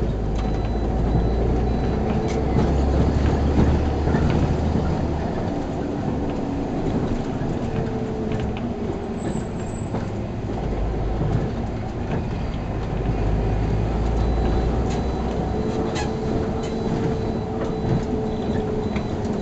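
Cabin of a SOR C 9.5 diesel bus under way: engine drone and road rumble with interior rattles. The engine swells louder twice as the bus pulls away, and a faint steady whine comes in near the end.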